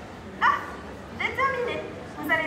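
A high-pitched, sing-song woman's voice over a PA, with short exclamations that sweep upward: one about half a second in and another run about a second later.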